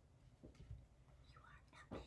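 Near silence, with a faint whisper in the second half and a soft tap just before the end.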